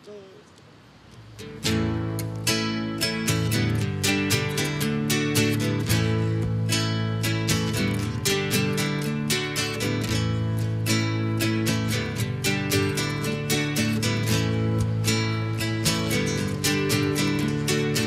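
Acoustic guitars strumming a song's intro in a steady rhythm, coming in about a second and a half in after a short quiet moment.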